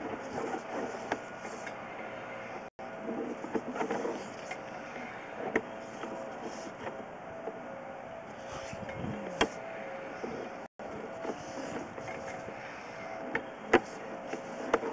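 Sewer inspection camera's push cable being reeled back through the line: irregular clicks and knocks over a steady hum. The sound cuts out briefly twice.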